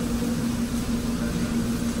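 Steady mechanical hum with one constant low tone, unchanging throughout.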